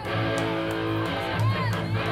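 Amplified electric guitar holding sustained, ringing chords.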